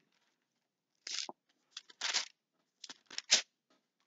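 Pages of a Bible being turned by hand: a series of short paper rustles, starting about a second in.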